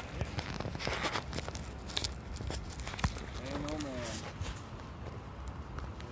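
Rustling and scuffing handling noise close to the microphone, with a sharp click about three seconds in, over a low outdoor rumble; a faint distant voice is heard briefly just after the click.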